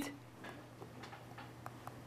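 Faint, irregular ticks of a stylus tapping and stroking on a tablet screen as handwriting is written, over a low steady hum.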